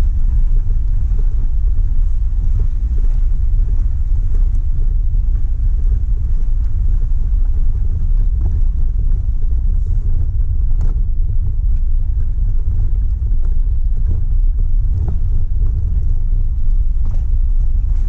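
Steady low rumble of a vehicle driving slowly over a gravel dirt road, with a few faint clicks and rattles.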